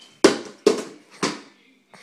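Three loud, sharp impacts in quick succession, about half a second apart, each fading out quickly.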